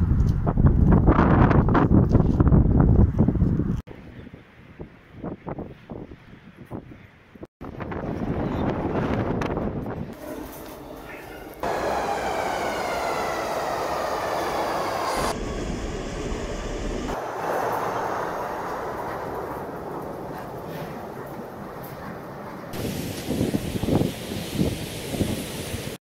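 A metro train at the platform, its electric motors giving a whine that glides in pitch over the rumble of the cars, about halfway through. The opening seconds are loud wind on the microphone.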